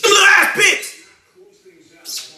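A man clearing his throat, a loud, harsh rasp lasting under a second.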